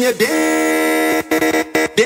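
Jingle (vinheta) from a car-sound dance mix: a clipped, processed voice, then a held buzzing horn-like synth tone for about a second, then choppy stutter effects.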